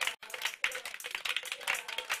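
Fast, rhythmic hand clapping, about six or seven claps a second, keeping time for dancers.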